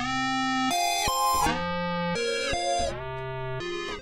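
Grime-style backing synth loop playing from Logic Pro X's Quick Sampler, time-stretched by Flex to follow a sped-up project tempo. It sounds as a run of held synth notes, changing about twice a second.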